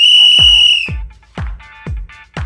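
A single loud, shrill whistle blast lasting about a second. It is followed by dance music with a kick drum beating about twice a second.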